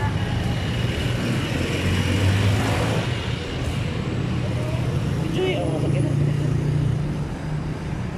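City street traffic at night: vehicle engines running in a steady low rumble as jeepneys and cars pass close by, with faint voices of people around.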